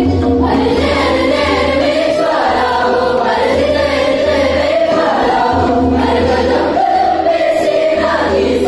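A group of girls singing a song together, choir-style, over musical accompaniment with a steady low tone underneath.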